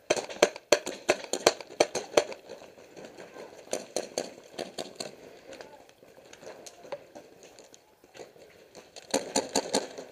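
Paintball markers firing: a rapid string of sharp pops through the first couple of seconds, then scattered shots, and another quick burst of pops near the end.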